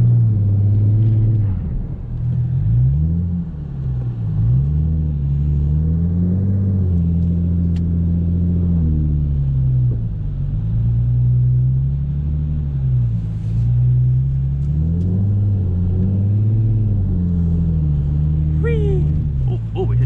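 Ford Mustang's engine, heard from inside the cabin, revving up and down again and again in waves of a second or two as the rear wheels spin and dig into snow: the car is stuck and will not move.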